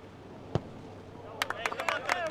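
A football struck hard once, a single sharp thud about half a second in, then near the end a burst of players' shouts and sharp cracks like claps as the ball goes into the net.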